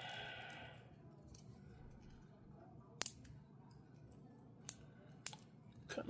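Faint handling sounds of fingers working at a small circuit board: a brief scrape at the start, one sharp click about three seconds in, and a few fainter clicks near the end.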